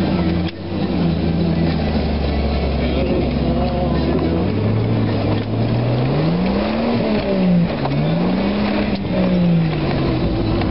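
Jeep engine pulling at steady low revs off-road, then revving up and dropping back twice over the second half as it climbs over humps in the track.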